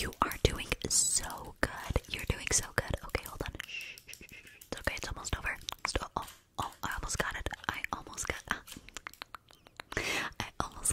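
Close-miked whispering and mouth sounds, broken by many sharp, irregular clicks.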